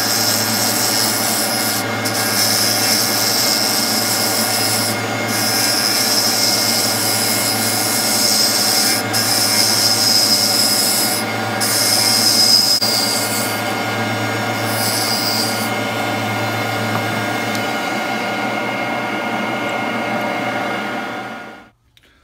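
Wood lathe running with a steady motor hum while a hand-held turning tool cuts a spinning redwood burl pen cap blank, a hissing scrape that breaks off briefly several times. The cutting stops about three-quarters of the way through while the lathe keeps running, and the sound cuts off abruptly just before the end.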